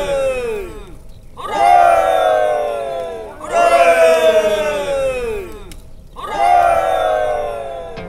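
A chorus of voices shouting long cries in unison, each sliding down in pitch. Three new cries start about every two seconds, after the tail of one that began just before.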